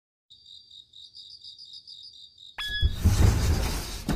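Cricket chirping, a steady pulse of about five high chirps a second; about two and a half seconds in, a much louder rough rumble cuts in and runs for about two seconds in two parts, fitting a sliding paper door being slid open.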